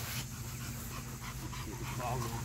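American Bully dogs panting with open mouths.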